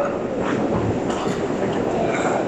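Steady rolling rumble and rattle of luggage wheels on a hard terminal floor.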